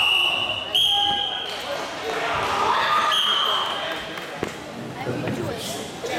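Three high, steady whistle blasts, two back to back in the first second and a half and a third about three seconds in, typical of karate referees' and judges' whistles, over the voices of a busy sports hall.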